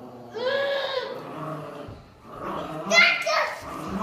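A toddler's wordless vocalising: two long, high cries, the first rising and falling, the second louder.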